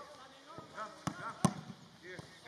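A football being kicked: one sharp strike about one and a half seconds in, with a softer touch just before it. Players' voices call out in the background.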